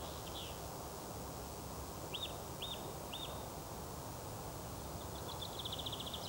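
Faint outdoor ambience with small birds calling: three short chirps about two seconds in, and a rapid high trill near the end.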